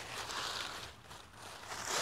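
Faint rustling of dry leaf litter as hands brush it aside, dying away after about a second.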